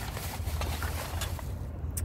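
Thin plastic trash bag rustling and crinkling with small clicks as items are rummaged through by hand, over a steady low hum.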